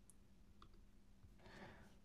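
Near silence: room tone with two faint clicks of a computer mouse or trackpad, and a faint rustle near the end.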